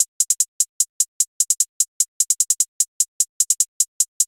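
Programmed trap hi-hat pattern played back on its own: a steady run of short, crisp ticks, about five a second, broken by brief quicker rolls.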